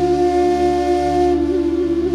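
Background music: a flute-like wind instrument holds one long low note, with small wavers near the end, over a steady low drone.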